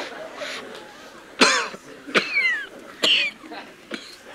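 A man coughing three times in short, harsh bursts, each with a downward-sliding vocal pitch, spaced under a second apart.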